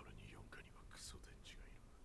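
Near silence with faint, whispery speech: anime dialogue playing at low volume.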